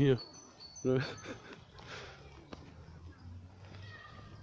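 A man's brief words, then quiet outdoor background with faint bird chirps and one soft click.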